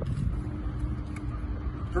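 Low, steady rumbling outdoor noise, mostly wind buffeting the microphone, with a faint steady hum that comes in about half a second in.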